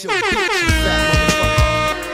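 Dancehall mix with a DJ air-horn effect that slides down in pitch and then holds, as a heavy bass beat drops in about half a second in.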